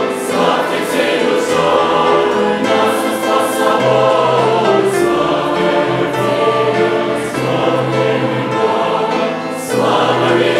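A large congregation singing a Russian-language Christian hymn together in unison, with grand piano accompaniment carrying the bass line.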